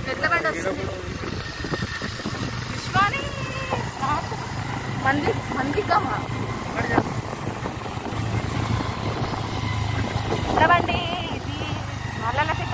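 Motorcycle engine running steadily under way, a low hum beneath people talking.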